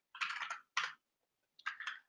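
Computer keyboard keystrokes in three short bursts, typing a command at a terminal prompt: a cluster of clicks early, a single quick burst just before the midpoint, and another cluster near the end.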